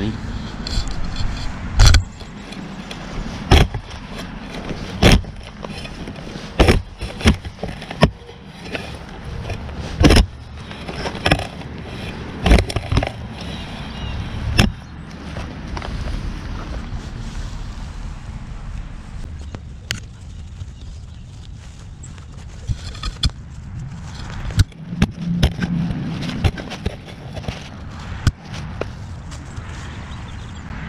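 A Nomad RootSlayer digging shovel stabbing into turf and soil to cut a plug over a detected target: a series of sharp strikes, each with a short scrape. The camera microphone is mounted on the shovel, so each strike is close and loud. Later, quieter scraping and rustling of the dirt are followed by another run of strikes near the end.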